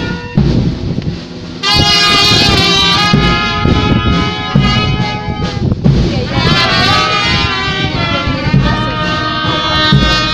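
Procession brass band playing a march, trumpets and saxophones in sustained chords over regular low beats, coming in loudly about a second and a half in.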